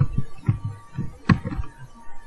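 Soft low thumps about every half second and one sharper click about halfway through, over a faint steady hum.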